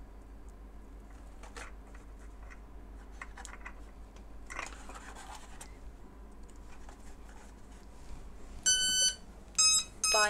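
Quiet handling clicks and a soft rustle, then a Spektrum DX9 radio transmitter beeping twice near the end, two short high beeps during a bind attempt with the plane's receiver.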